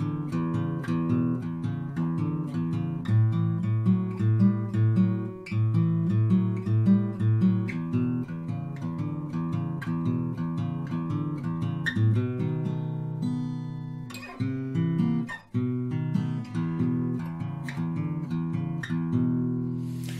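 Steel-string acoustic guitar playing a blues passage in B: a repeating bass-note rhythm with strummed chords, ending on a B7 chord.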